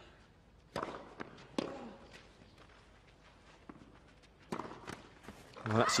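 Tennis ball on a clay court: several sharp pops, irregularly spaced, from the ball being bounced before the serve and then struck by racket strings in the serve and rally. A man's voice comes in right at the end.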